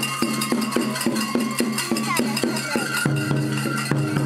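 Japanese kagura festival music played live: a taiko drum and a bright metal percussion beat of about four strokes a second, under a held flute melody.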